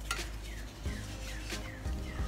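Wooden stick stirring and scooping thick water putty in a plastic cup: a few faint scrapes and taps against the cup wall.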